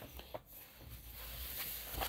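Quiet room tone with a steady low hum and a couple of small soft clicks near the start.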